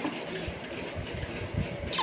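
Quiet room noise with a few soft, low thumps and a light click near the end.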